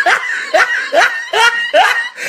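A person laughing hard in a run of short bursts, about three a second, each with a rising pitch.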